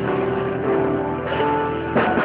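Live band music: piano chords ringing over electric guitar and drums.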